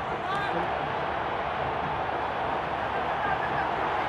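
Steady field-level ambience of a professional football match broadcast, with faint shouts from players on the pitch.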